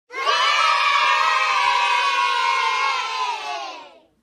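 A group of children shouting and cheering together in one long yell that drifts slightly down in pitch and fades out near the end.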